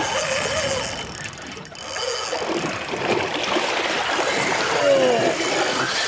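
Spinning reels' drags howling as hooked yellowtail kingfish strip line off them, a thin high whine over a steady noisy wash.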